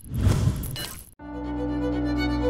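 Intro sound effect: a noisy burst that swells and fades over the first second, then cuts off sharply. After a brief gap, music of steady held notes begins.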